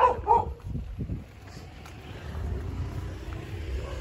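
A dog barking twice in quick succession at the start, followed by a low steady rumble.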